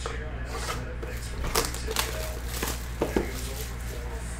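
Small cardboard trading-card boxes being handled and set down on a table: a handful of light knocks and taps with some rustling, over a steady low hum.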